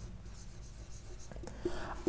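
Marker pen writing on a whiteboard: faint strokes of the tip across the board, with a few short scratches about a second and a half in.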